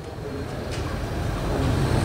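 Low, steady rumble of room background noise picked up by a desk microphone, with a faint click under a second in.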